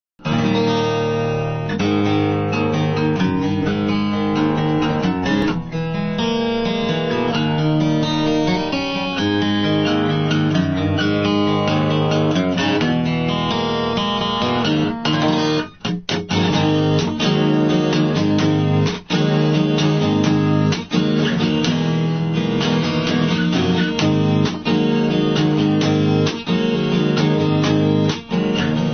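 Solo acoustic guitar playing a song's instrumental intro, chords ringing with a few brief breaks about halfway through.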